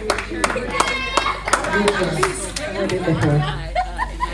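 Several people talking over one another, with scattered handclaps throughout.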